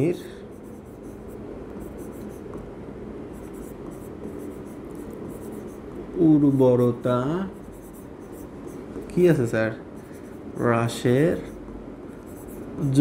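Marker writing on a board: faint, scratchy pen strokes as a line of words is written, with a man's voice briefly cutting in during the second half.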